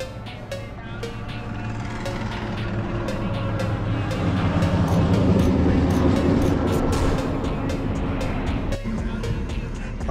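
A heavy lorry's engine and tyres passing on the highway, building to loudest about five or six seconds in and then easing off, with background music over it.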